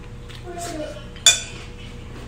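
A single sharp clink of a utensil against a ceramic plate, with a short ring, a little over a second in.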